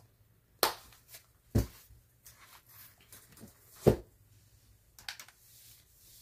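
Handling of a faux-leather budget binder on a desk: a sharp click as its snap closure is pressed shut, then a few separate thuds as the binder is moved and set down, the loudest near the end, followed by light taps.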